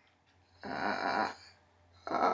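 A woman's breathy, wordless vocal sound lasting under a second, about halfway in.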